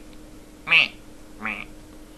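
A man imitating a penguin's call with his voice: two short, rising squawks less than a second apart, the first louder.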